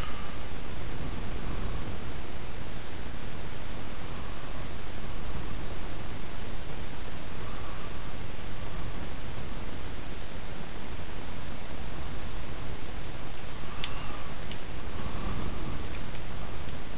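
Steady hiss of a recording microphone's background noise, with a few faint clicks about two seconds before the end.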